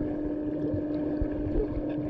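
Underwater ambience in a pool, heard from a diver on a closed-circuit rebreather: a steady low hum with a few faint muffled knocks, and no exhaled bubbles.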